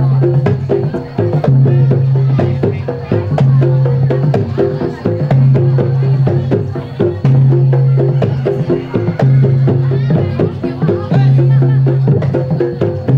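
Kendang pencak music accompanying pencak silat: hand-played two-headed kendang drums beating a fast rhythm, with a low steady tone sounding about every two seconds and a higher melodic line over it.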